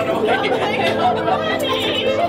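Several people chattering and exclaiming excitedly at once, no clear words, over soft background music.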